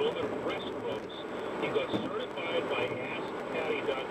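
Indistinct talk from a car radio playing inside a moving car's cabin, over steady road noise.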